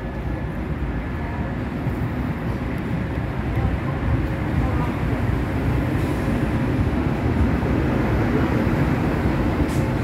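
Eurostar high-speed electric train, a red ex-Thalys PBKA set, pulling in along the platform and rolling past close by. Its wheels and running gear make a steady low rumble that grows louder as it draws level.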